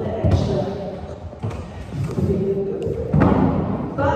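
A muffled voice echoing in a large gym studio, with dull thuds about once a second.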